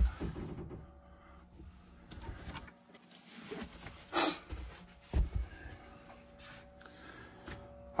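Quiet handling noise from a fabric-faced narrowboat porthole cover being taken out: rustling, then a sharp knock about four seconds in and a soft thump about a second later.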